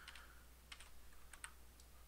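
Near silence with a low steady hum and a few faint clicks from computer input, a mouse and keys being worked at a desk.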